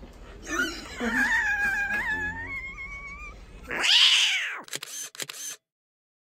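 A person's long, high-pitched squeal, held for about three seconds with a wavering pitch, followed by laughter. About four seconds in comes a loud falling swoosh, then a few sharp clicks, and the sound cuts off to silence.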